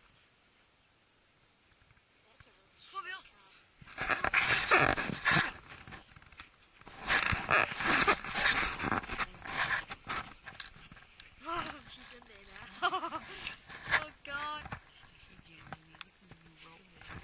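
Bursts of scraping and rustling in soil and grass from a dog digging into a rabbit burrow, starting about four seconds in. A few short, high, wavering animal cries come through near the end.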